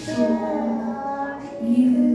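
A group of children singing together, with a woman's voice among them, in long held notes.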